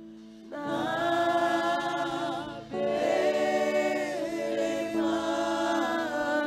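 A gospel worship choir singing long, held notes in harmony. The singing comes in about half a second in, with new phrases starting near the three- and five-second marks.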